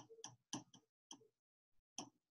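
Faint, irregularly spaced clicks, about half a dozen in two seconds, from a stylus tip tapping on a pen tablet or touchscreen as she handwrites a limit expression.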